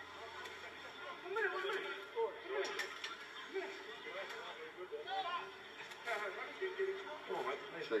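Indistinct voices of men talking and calling at a distance across an open playing field, with a few faint clicks.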